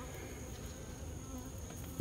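Faint, steady buzzing of Italian honey bees crawling over a frame of wax foundation and flying around an open hive box.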